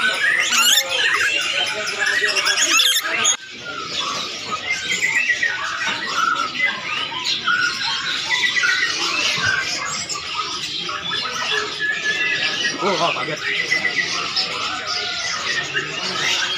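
Several parrots calling at once: a continuous jumble of shrill squawks and chirps.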